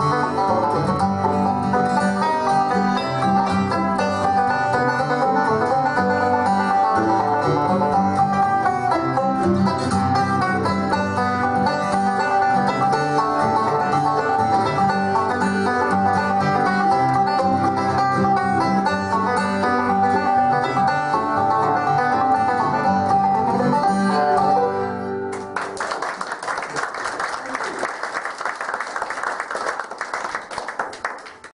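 Bluegrass band playing, a five-string banjo leading over guitar, until the tune ends about 25 seconds in. Then a small audience applauds.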